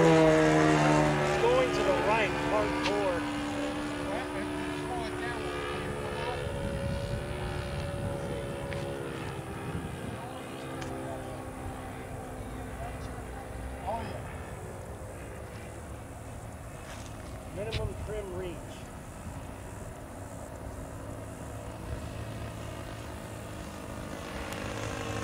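Saito 1.00 four-stroke glow engine of a Hanger 9 P-40 RC plane running steadily in flight. It is loudest at first and fades over the next several seconds as the plane flies off, then drones on faintly.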